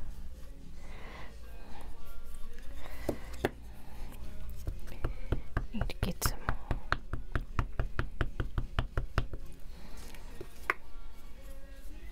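A rapid run of light taps, about five a second for roughly four and a half seconds, as an ink pad is dabbed against a rubber stamp mounted on a clear acrylic block. A few single knocks come before and after the run.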